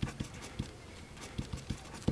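About seven soft, low knocks at uneven intervals, several of them close together in the second half.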